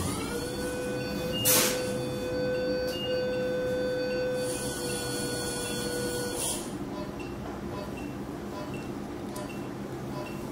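Phaco machine's aspiration tone during irrigation-aspiration: a steady electronic tone that sets in just after the start, after having risen in pitch, with a sharp click about one and a half seconds in. The tone cuts off about six and a half seconds in, and faint short beeps follow about twice a second.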